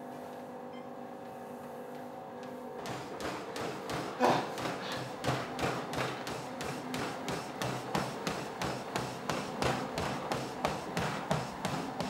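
NordicTrack treadmill running with a steady hum; about three seconds in, rhythmic thuds of running footsteps on the belt begin, about three a second.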